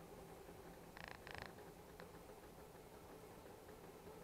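A 3D printer runs faintly with a low steady hum. About a second in come two short buzzes close together, the loudest sound here.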